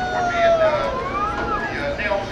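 Long, wordless whoops from two voices: one held and slowly falling, the other rising and then dropping about a second and a half in.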